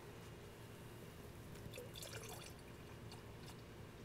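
Faint trickle of distilled water being poured from a plastic gallon jug into another plastic jug half full of antifreeze concentrate.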